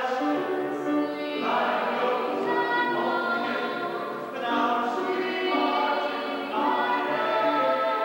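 A woman singing a slow melody in long held notes, with a short break for breath a little past four seconds in.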